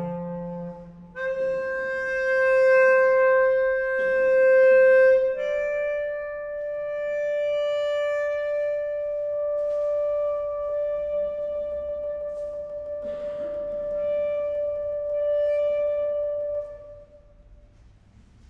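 Clarinet holding long notes: one held for about four seconds, then a slightly higher note sustained for about eleven seconds until it stops near the end.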